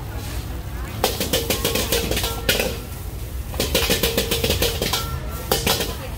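Metal ladle scraping and clattering in a wok while stir-frying fried rice, in two runs of rapid metallic strokes with a ringing note. Under it is the steady low rush of a gas wok burner.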